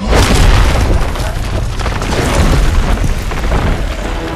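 Film sound effect of a sudden deep boom that opens into a long, heavy rumbling crash, with a little score underneath.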